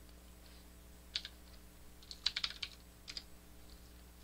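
Computer keyboard keystrokes: a single click about a second in, a quick run of several keystrokes a little after two seconds, and a couple more just after three seconds, over a faint steady low hum.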